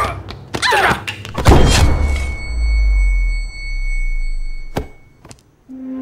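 Blows in a struggle with a wooden plank: a sharp hit at the start, short pained cries and a heavy low thud as a person falls to the floor. A steady high-pitched ringing tone then holds for about three seconds over a low rumble, a sharp knock comes near the five-second mark, and soft music enters just before the end.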